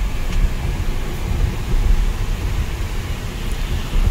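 Steady road and wind noise inside a Tesla's cabin at highway speed, mostly a low tyre rumble, as the electric car slows under regenerative braking after the accelerator is released.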